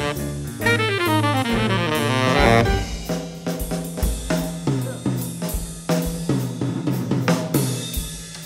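Live small-group jazz with the drum kit to the fore: snare, cymbals and bass drum keep a busy pattern over upright bass and keyboard. A fast run of notes rises and falls in the first couple of seconds before the drums take over.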